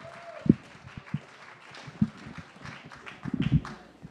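Audience applause and clapping, with a few sharp thumps.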